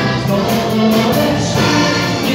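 Live dance-band music: accordion playing held chords and melody over bass guitar and a steady drum beat with a cymbal struck about four times a second.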